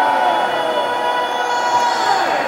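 A male rock singer holding one long, steady, high note into the microphone over crowd noise, amplified through a concert PA and echoing in a large hall.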